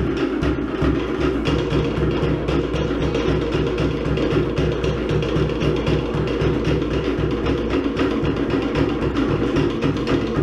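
Cook Islands drum ensemble playing a fast, steady dance rhythm on wooden slit drums and a deep bass drum.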